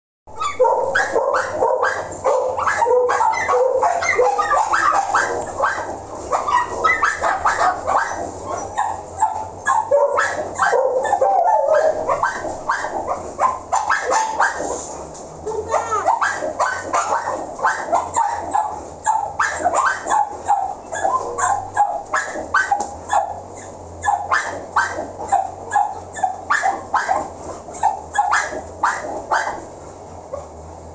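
Dogs barking continuously in a kennel, several voices overlapping in a dense run at first, then settling into a steadier rhythm of about two or three barks a second near the end.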